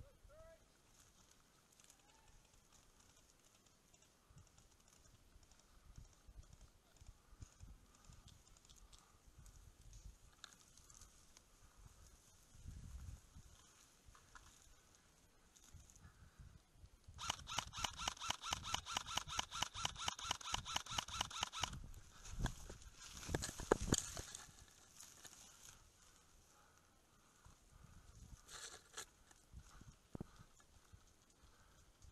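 Dry bracken rustling faintly, then an airsoft gun firing a long full-auto burst of about ten shots a second for four to five seconds, followed by a few single shots and a brief flurry near the end.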